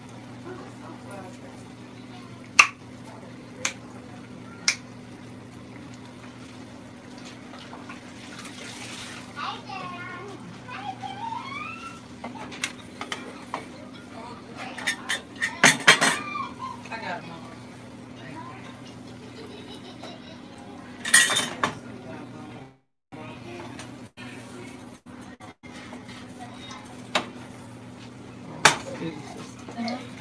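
Kitchen clatter: a spoon clinking and scraping in a glass mixing bowl of hoecake batter. A few sharp clinks come in the first seconds, the loudest burst about halfway through and another a few seconds later, all over a steady low hum.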